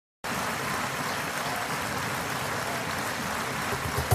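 Concert audience applauding steadily.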